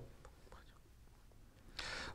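Near silence: quiet room tone in a pause in the talk, with a short breathy sound near the end.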